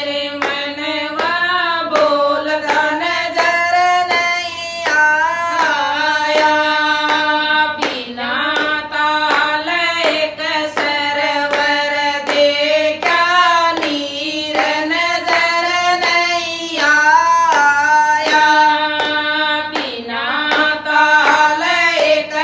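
Women's voices singing a Haryanvi bhajan (devotional folk song) together, with hand claps keeping a steady beat about twice a second.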